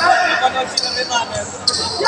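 Three short, high basketball-shoe squeaks on the court surface, about a second apart, over the murmur of players' and spectators' voices.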